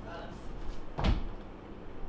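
A single dull thump about a second in, over quiet room sound.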